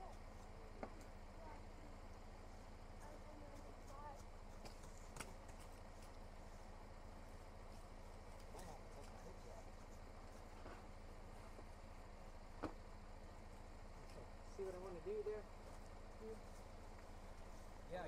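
Faint steady low hum of a Chevrolet Colorado pickup's engine idling, with a few faint knocks as plastic traction boards are set under the tyres in the mud. Distant voices come in briefly near the end.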